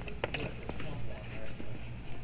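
Shop background: faint voices at a distance over a steady low hum, with a few light clicks about a quarter to half a second in.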